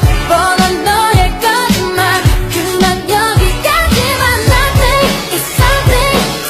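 Pop song with a singer over a steady kick drum, about two beats a second, playing as dance music.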